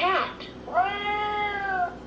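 Electronic cat meow played through the speaker of a VTech Touch & Learn Activity Desk toy: one long call, starting about two-thirds of a second in and dipping slightly in pitch as it ends, after the toy's voice finishes naming the letter.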